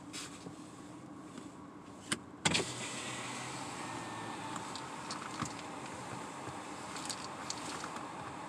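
Inside a car: a short click about two seconds in, then a steady low hum of the car running comes on suddenly and carries on, with a few small knocks and rustles.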